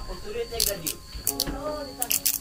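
Voices talking in the background, with a few short sharp clicks.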